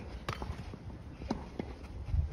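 Tennis ball bouncing on the court, with the player's footsteps: a sharp knock about a third of a second in, then two lighter knocks a little after a second.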